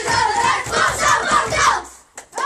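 A group of young children shouting and chanting together in a victory cheer, with hands slapping a wooden table, the cheer breaking off abruptly just before the end.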